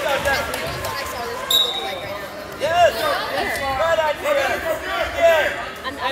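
Wrestling shoes squeaking in short, repeated chirps on the mat as the wrestlers scramble, over background voices in a gym. A short high steady tone comes about a second and a half in.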